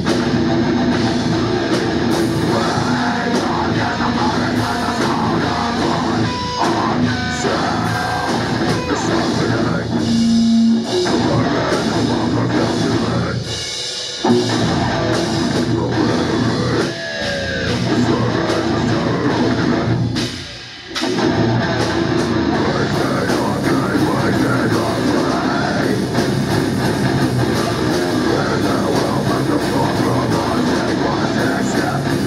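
Heavy metal band playing live: distorted electric guitars and drum kit, loud and dense, with three brief stops in the middle, the deepest about two-thirds of the way through.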